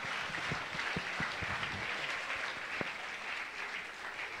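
Congregation applauding, many hands clapping steadily and easing off slightly toward the end.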